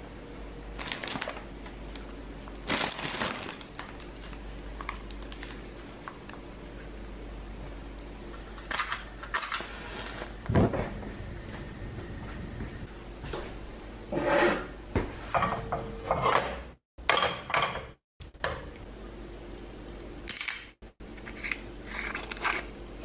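Kitchen handling sounds: scattered clinks, knocks and light clatter of dishes and a pan, with a louder thump about ten seconds in and busier clatter in the second half.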